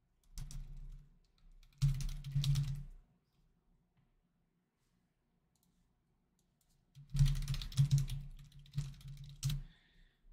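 Clear plastic bag around a jersey crinkling as it is handled, in three bursts of crackle: just after the start, about two seconds in, and again from about seven seconds until near the end.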